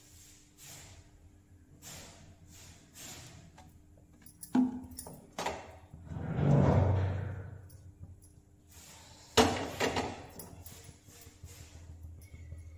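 A steel kadai and an oil bottle being handled on a gas stove: faint clicks, a clunk about four and a half seconds in, a loud rush that swells and fades over about two seconds, then a sharp knock near ten seconds followed by a few light clicks.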